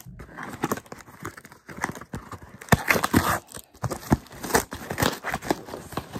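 Cardboard shipping box being pulled open by hand: irregular crackling, scraping and tearing of the cardboard flaps, loudest about halfway through.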